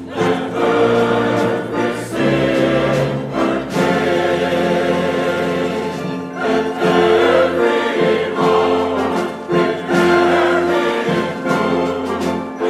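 Symphony orchestra and large mixed choir performing together live, the choir singing over held orchestral chords.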